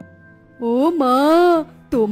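Soft background music with steady low notes; about half a second in, a voice holds one long, wavering vowel for about a second, its pitch swaying up and down.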